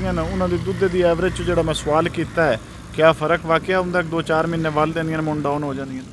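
Men talking in conversation, with a steady low mechanical hum underneath that is strongest in the first couple of seconds.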